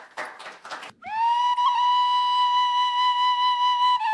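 Frula, the Serbian wooden end-blown flute, sounding one long held note that starts about a second in, slides briefly up into pitch and then holds steady, bright with overtones, as the opening of a tune.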